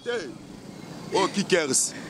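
Street background noise, with a short stretch of voices speaking about a second in.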